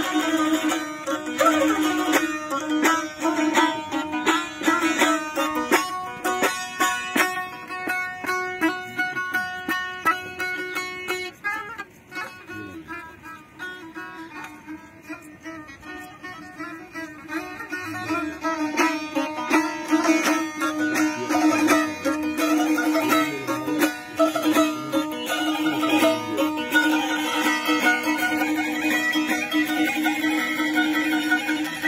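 A plucked string instrument playing traditional Azerbaijani music over a steady held low note. It plays more softly for several seconds in the middle, then builds back up.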